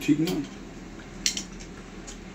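A man speaks briefly, then a single short, sharp clink sounds a little over a second in.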